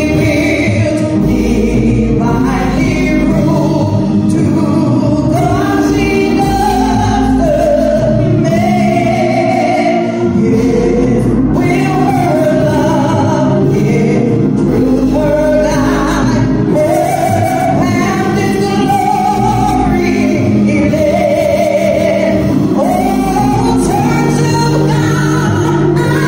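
A woman singing a gospel solo into a microphone over steady instrumental accompaniment, with long, bending held notes.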